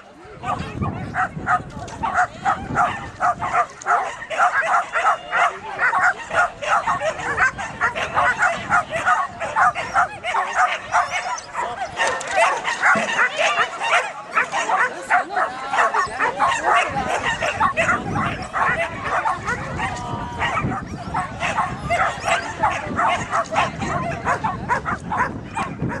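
A dog running an agility course barks over and over, rapid sharp barks about three or four a second, kept up throughout the run.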